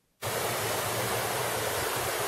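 Caledonia waterfall and its mountain stream rushing, a steady noise that cuts in suddenly a fraction of a second in.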